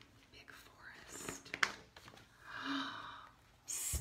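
A woman's faint whispering and breath, soft and broken up, in a quiet small room.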